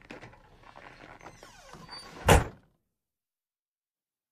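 A wooden door slammed shut with a single loud, heavy bang a little over two seconds in, after some quiet shuffling and small knocks of movement.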